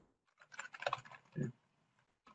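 Typing on a computer keyboard: a quick run of light keystrokes over the first second and a half, with one short low sound about a second and a half in.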